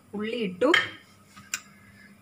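A voice speaks briefly, then a single light metal clink of a kitchen utensil sounds about one and a half seconds in.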